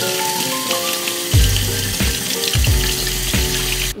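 Kitchen tap running into a sink, the stream splashing over a metal strainer held under it, a steady hiss that starts suddenly and cuts off abruptly near the end. Background music with piano chords plays along, with a deep beat coming in about a second in.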